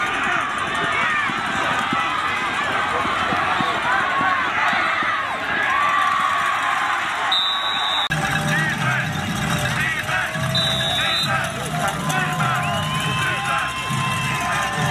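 Football crowd of many voices shouting and talking at once, with two short high whistle blasts, about halfway through and again a few seconds later.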